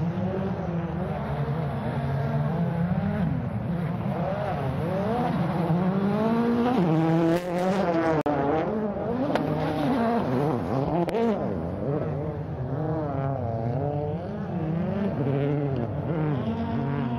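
A 2012 World Rally Car's turbocharged 1.6-litre four-cylinder engine revving hard. Its pitch climbs and falls again and again through gear changes and corners. There is a short break and a few sharp cracks around the middle.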